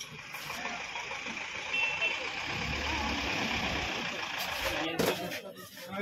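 Steady noise of a running motor vehicle engine, with a deeper rumble swelling in the middle, breaking off abruptly about five seconds in.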